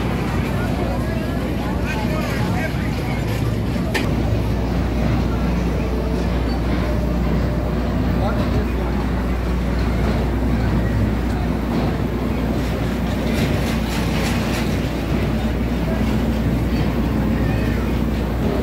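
Carnival midway ambience: a steady low mechanical hum from rides and machinery under the chatter of crowd voices, with a sharp click about four seconds in.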